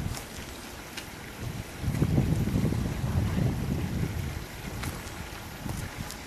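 Wind buffeting the microphone outdoors: a low rumble that swells about two seconds in and holds for about three seconds.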